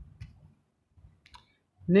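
A few faint, short clicks about a second apart in an otherwise quiet pause.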